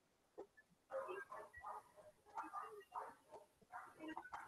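Near silence with a few faint, short vocal sounds in the background, too faint to tell whether a distant voice or a dog whimpering.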